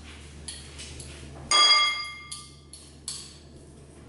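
A metal spoon strikes a small glass bowl about one and a half seconds in, a sharp clink that rings on briefly with a clear pitched tone. A few lighter taps of utensil on glass come around it.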